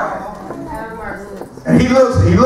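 Speech only: a man preaching, trailing off at the start, a quieter stretch with faint voices, then speaking loudly again near the end.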